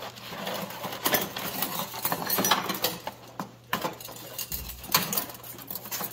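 Hands rummaging in a cardboard box of nitrous kit parts: cardboard and plastic bags rustling, with metal fittings and braided lines clinking, and one sharper click about five seconds in.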